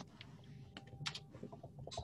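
Typing on a computer keyboard: irregular key clicks, bunched a little about a second in and again near the end.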